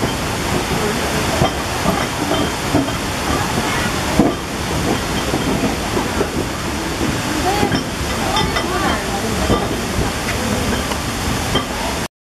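A steady rushing hiss with indistinct voices in the background.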